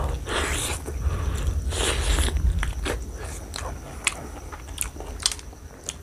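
Close-miked wet chewing and biting of mutton curry and rice eaten by hand. It opens with two longer bursts of mouth noise, followed by many short, sharp, wet clicks.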